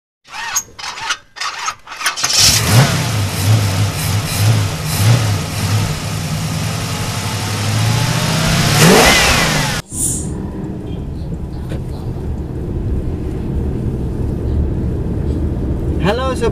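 Intro sound effects: a few sharp hits, then a loud car-engine revving effect that rises in pitch and cuts off suddenly near the middle. After that comes the steady low rumble of a Toyota Alphard minivan driving, heard from inside the cabin.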